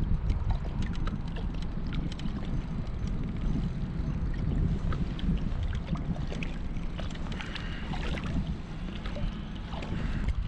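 Wind buffeting the microphone in a steady low rumble, over water lapping close by, with scattered faint small clicks and knocks.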